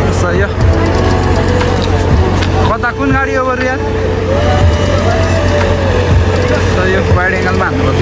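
Bus engines idling with a steady low hum, with voices and snatches of melody over it.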